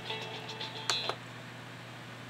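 Music from a children's video playing through a portable DVD player's small speaker, stopping after about a second with two sharp clicks, leaving a low steady hum.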